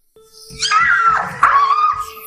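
A woman squealing with delight in high, wavering cries, starting about half a second in, over a steady held note of background music.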